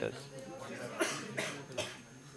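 Felt-tip marker drawing on paper: three short scratchy strokes about half a second apart, in the second half.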